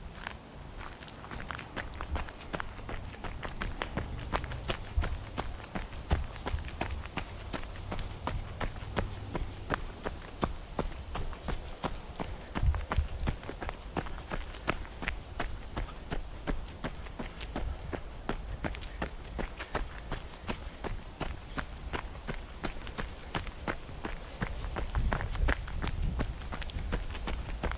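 Running footsteps of a jogger at an even pace, about three strides a second, landing on a dirt trail strewn with fallen leaves.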